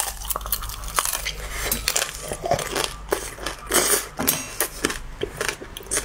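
Close-up crunching and cracking of a frozen candied sugar shell on cherry tomatoes as it is bitten and chewed: many sharp, irregular glassy cracks.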